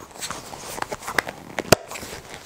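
A solid rubber ring being worked by hand onto a plastic disc: scattered clicks and rubbing, with one sharp knock near the end.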